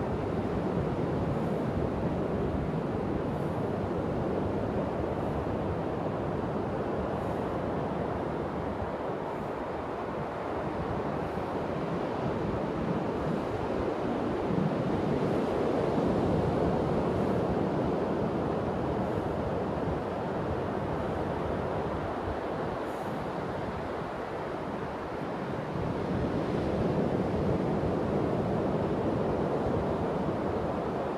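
Ocean surf breaking on a sandy beach, a steady rushing that swells twice, with wind buffeting the microphone.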